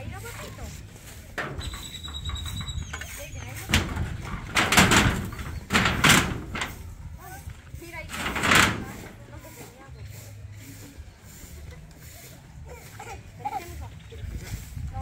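A loose metal sheet being shifted and dragged over a concrete slab: a short high squeal, then four loud scrapes of about half a second each.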